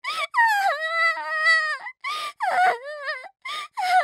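A girl crying hard: a long wailing sob held for over a second, then shorter sobs broken by gasping breaths.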